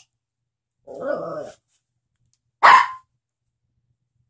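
A small dog vocalizing twice: a half-second wavering call about a second in, then a single short, loud bark a little past halfway through.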